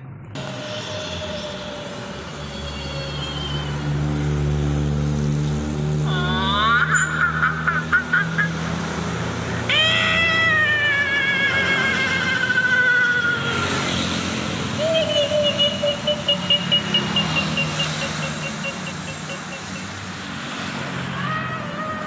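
Road traffic with vehicle engines running, and over it a melody of long pitched notes that glide up and down and waver, strongest about a third of the way in and again past the middle.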